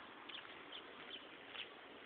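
Quiet outdoor background with a few faint, short bird chirps scattered through it.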